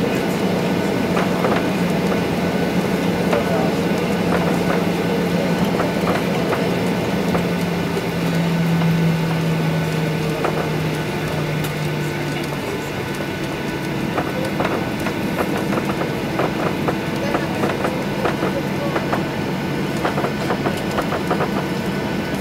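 Cabin noise of a Boeing 737-800 taxiing, heard over the wing: the steady hum of its CFM56 engines at low thrust, with frequent light knocks and rattles as the wheels roll over the taxiway. About halfway through, the low hum tone fades and a slightly higher one takes over.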